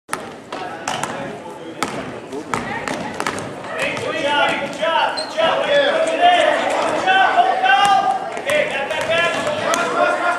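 Basketball dribbled on a gym floor, a few sharp bounces in the first seconds, then raised voices of players and spectators shouting from about four seconds in.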